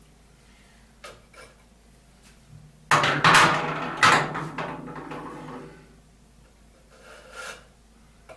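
Spare sanding drums and spindles of an oscillating spindle sander being handled in their storage: a couple of small clicks, then a loud clatter about three seconds in and another knock about a second later that dies away, and a softer clunk near the end.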